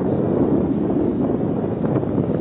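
Rough sea surf breaking on the beach: a steady, even roar, mixed with wind buffeting the microphone.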